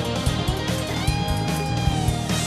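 Live rock band playing: electric guitar over drums and bass with a steady beat. About halfway through, a held guitar note bends upward and rings on.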